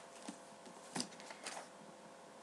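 Paper pages of a planner being flipped by hand: a faint rustle with a sharper paper snap about halfway through.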